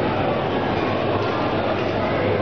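Steady mechanical rumble of a 360-degree flight simulator pod turning on its axle, its drive running with a low hum underneath.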